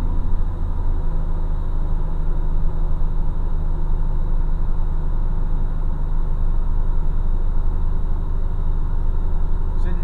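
Heavy truck's diesel engine running steadily under load, a deep even drone with road noise, heard from inside the cab.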